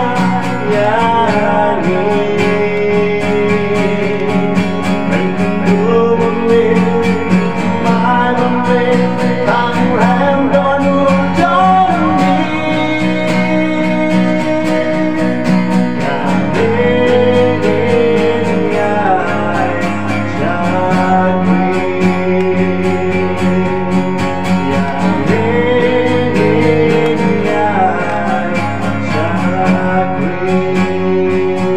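A man singing a gospel song while strumming an acoustic guitar.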